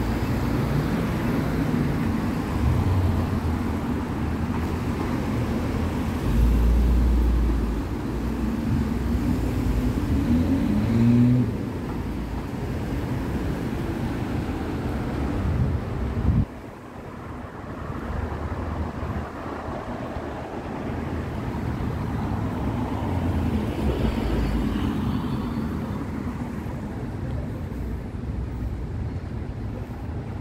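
City street traffic: cars driving through an intersection, with engines running and tyres on the road and a deep rumble about six to eight seconds in. About halfway through, the sound drops suddenly to quieter street traffic noise.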